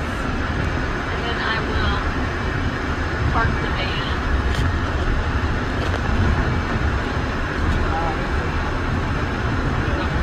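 Steady low engine and road rumble heard inside a passenger van's cabin as it drives slowly, with faint voices now and then.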